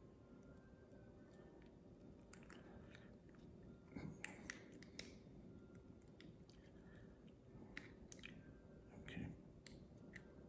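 Near silence with a few faint, scattered clicks of small plastic parts as a little Bluetooth shutter remote's battery compartment is fiddled with.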